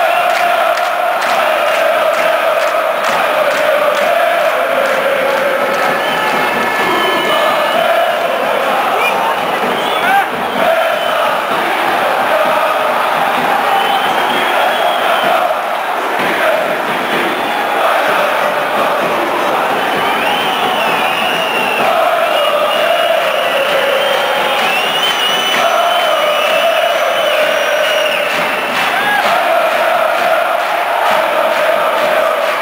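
Large football crowd chanting and singing together, loud and continuous, in a stadium stand.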